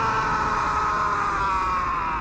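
A cartoon character's long, held scream: one sustained cry whose pitch slowly falls, over a low rumble of background effects.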